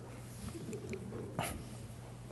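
A pause in a lecture: quiet room tone with a steady low electrical hum and a faint low murmur, with one short breath-like hiss about a second and a half in.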